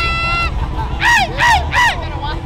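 Three short, high-pitched whoops or yells close together, over a steady low rumble.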